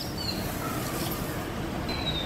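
Granulated sugar being poured into a wok of grated raw mango and water, making a steady granular hiss.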